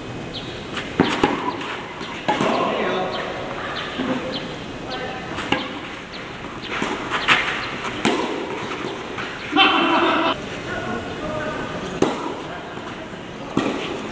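Tennis ball struck back and forth by rackets in a doubles rally: a series of sharp pops a second or two apart, with voices in between.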